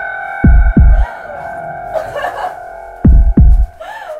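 Dark film score: a sustained droning chord with a heartbeat-like double low thump, heard twice, about two and a half seconds apart.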